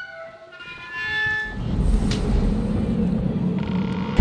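Two short, sustained horn-like chords in the first second and a half. A dense low rumble then swells and holds.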